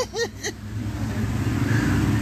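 Car engine running steadily as the car drives slowly through floodwater, heard from inside the cabin.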